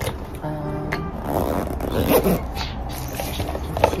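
A zipper on a fabric cosmetic pouch being drawn along in one rasping run of about a second, preceded by a short musical sound near the start, with a sharp click near the end.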